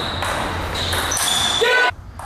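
Table tennis rally sounds in a sports hall, with a short rising squeal near the end that cuts off sharply.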